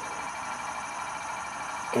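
HO-scale coal hoppers rolling along model railroad track: a steady, even running noise of small wheels on rail, with no distinct clicks or knocks.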